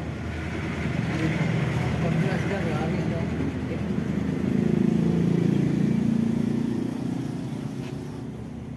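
A motor vehicle's engine passes by: it grows louder to a peak about five seconds in, then fades. Faint voices murmur underneath.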